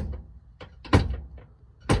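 Automatic floor shifter lever being moved through its gears, clicking into each detent: three sharp clicks about a second apart. The gear positions sit real close together, so the shift is tight.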